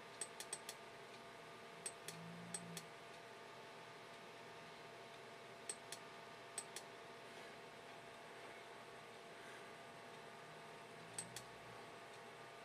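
Faint, sharp clicks, mostly in quick pairs, in four short clusters over a low steady background hum: the clicking of computer controls.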